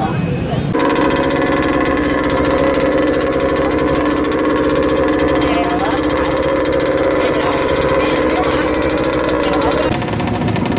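Small combustion engine of a radio-controlled model boat running steadily at high speed, a fast even buzz with a constant pitch. It cuts in abruptly about a second in and stops just before the end.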